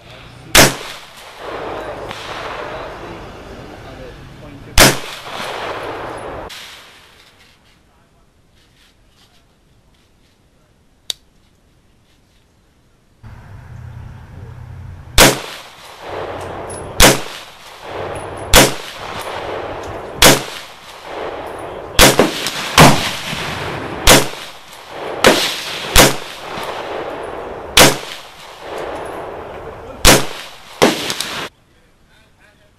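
300 Blackout AR-style pistol firing subsonic rounds: two shots about four seconds apart, a quiet pause with one faint click, then a string of about ten shots one to two seconds apart, each with a short ringing tail.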